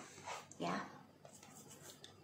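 A single spoken 'ya' about half a second in, then faint rustling of tarot cards being handled on the table.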